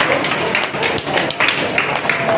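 Audience applauding: a dense, continuous patter of many hands clapping.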